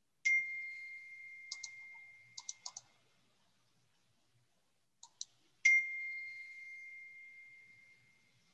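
A bright ding rings out twice, about five and a half seconds apart, each a single clear tone that fades over two to three seconds; a few light clicks sound between them.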